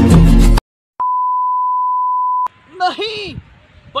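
Bollywood film-song music that cuts off abruptly, then after a brief silence a single steady electronic beep held for about a second and a half, an edited-in sound effect. Near the end comes a short sound that slides up and down in pitch.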